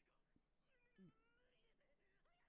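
Very faint cartoon dialogue, with one short cry about halfway through that falls in pitch and stands a little louder than the rest.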